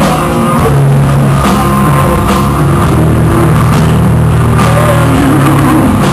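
Rock band playing live at full volume: electric guitar and bass holding low chords over a drum kit.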